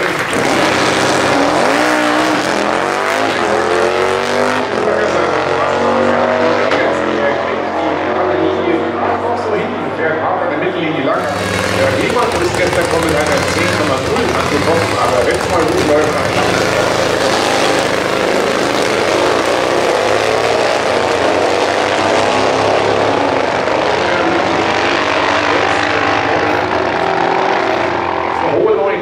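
Two-cylinder Super Twin Top Gas drag-bike engines running and revving hard at the start line, their pitch rising and falling again and again.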